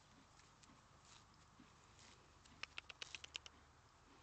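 Near silence, broken near the end by a quick run of about seven sharp clicks lasting under a second.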